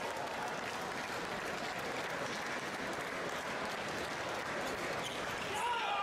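Spectators applauding a won point in a table tennis match, a steady patter of clapping. A single voice calls out, rising and falling, near the end.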